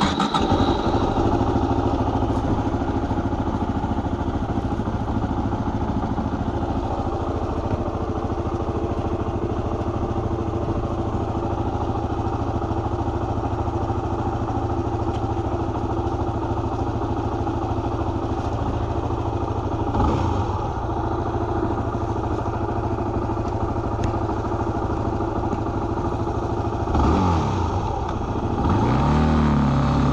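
Motorcycle engine running at a steady idle. Near the end its revs rise and fall a couple of times.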